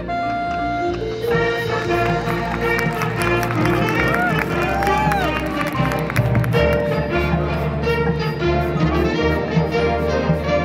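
Marching band playing a full ensemble passage: brass chords over low percussion and front-ensemble keyboards, with a sliding, swooping note rising and falling about four to five seconds in.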